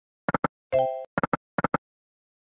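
Sound effects of the 100 Burning Hot video slot: a series of short, sharp double clicks as the reels stop, with a brief chime a little under a second in.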